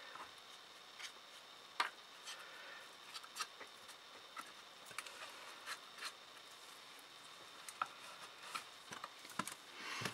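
Quiet rubbing and light, scattered taps of a fine paintbrush and a baby wipe working inside the compartments of an MDF holder, wiping out excess glue while it is still wet. The sharpest tap comes about two seconds in, with several more near the end.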